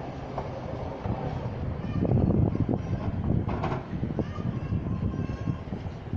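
Class 153 single-car diesel railcar approaching the station from a distance, a low rumble that swells about two seconds in. A thin steady tone comes in near the end for about a second.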